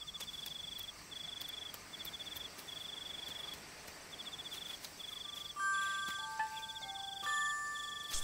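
Night crickets chirping: a high, even-pitched trill in short bursts, about one a second, with brief gaps between. About five and a half seconds in, soft sustained chime-like music notes enter over it.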